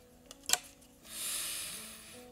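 A deck of angel oracle cards being handled as a card is drawn: one sharp click about half a second in, then about a second of rustling that fades out.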